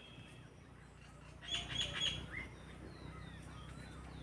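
Birds chirping: a quick run of three or four high calls about one and a half seconds in, followed by scattered short falling chirps.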